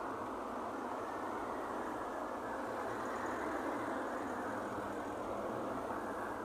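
Steady, even rushing noise of road traffic, with no rise or fall, sounding muffled and thin.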